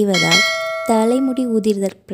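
Bell chime sound effect of an on-screen subscribe-button animation: a ringing tone that starts just after the opening and fades out over about a second and a half.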